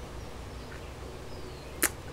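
A pause in talk with only low outdoor background and a few faint high chirps, typical of distant birds. A single brief sharp click comes near the end.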